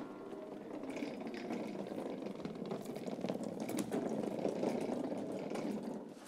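Casters of a wheeled flight case rolling over a hard floor as it is pushed along, a steady rumble with faint clicks and knocks from the case.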